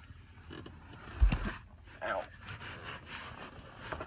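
A person squeezing into the driver's seat of a small roadster: handling and shuffling, with one heavy, deep thump about a second in as the body drops into the seat or knocks against the car.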